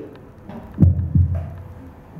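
Camera handling noise: two dull, low thumps about a third of a second apart, about a second in.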